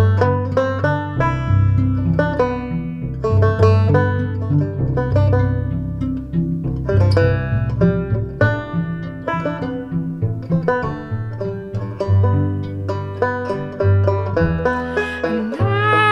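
Instrumental break: a banjo picking quick runs of notes over a low bass line plucked on a cello. A woman's singing voice comes in near the end.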